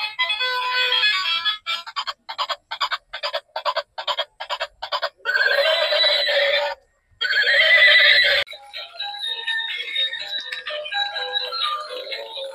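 Tinny electronic tune from a battery-operated musical light-up toy's small speaker, thin with no bass. It plays short rhythmic notes, about three a second, then a denser passage, stops briefly about seven seconds in, and gives way to a different, quieter tune for the last few seconds.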